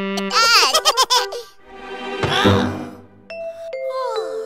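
Children's cartoon soundtrack: music with a cartoon character's high-pitched giggling from about half a second in, then a short vocal sound in the middle and a couple of held notes near the end.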